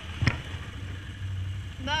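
Can-Am Outlander ATV engine running at a low, steady pace while the quad crosses deep slush, with one sharp knock about a quarter second in.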